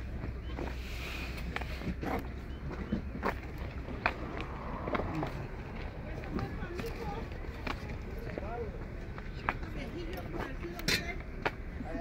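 Outdoor crowd ambience: faint voices of nearby people talking, with occasional sharp clicks and a low steady rumble underneath.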